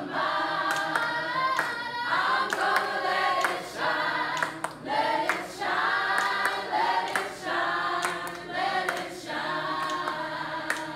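A group of mixed voices singing together unaccompanied, with hand claps among the singing.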